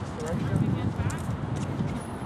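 Indistinct voices talking, with scattered light clicks and knocks from armoured fighters moving about.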